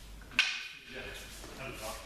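Two wooden jo staffs striking together once, a sharp clack with a brief ringing tail.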